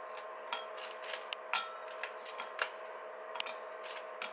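Oatmeal cookies being handled out of a plastic package and set on a porcelain cake stand: crinkling plastic and a string of light, irregular clicks and taps. A faint steady hum runs underneath.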